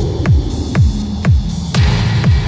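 Experimental electronic house music: a kick drum on every beat, about two a second, each falling in pitch, over a sustained low bass drone.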